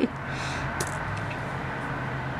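A woman's short breathy laugh at the start, then a steady low hum in the room with a single faint click.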